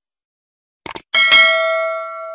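Subscribe-button animation sound effects: a quick double mouse click, then a notification-bell chime struck twice in quick succession and ringing on as it slowly fades.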